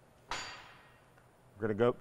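A single sharp metallic clank that rings briefly and fades, from metal parts of the welding setup knocking on steel, followed by a man starting to speak.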